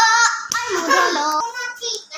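A child's high-pitched voice singing, with a sharp click about half a second in.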